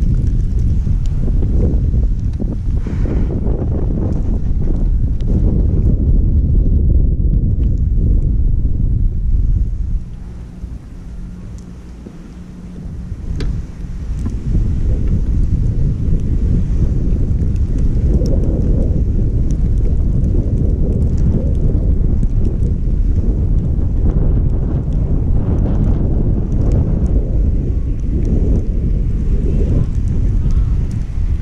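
Wind buffeting a GoPro 5 action camera's microphone while skiing downhill, a loud low rumble. It drops away for a few seconds near the middle, then comes back.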